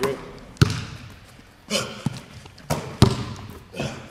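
A basketball bouncing on a hardwood gym floor: several sharp, unevenly spaced bounces that echo in the large hall.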